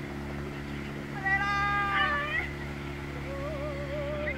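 A person's long, high-pitched, cat-like call, held level for about a second and then sliding up at its end, over the steady low hum of a boat engine. Near the end a second, wavering voice call begins.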